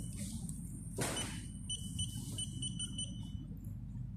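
Short, high electronic beeps from a phone screen tester as a replacement display is tested: one just at the start, then a quick run of them from about two seconds in. A brief brushing swish about a second in, over a steady low hum.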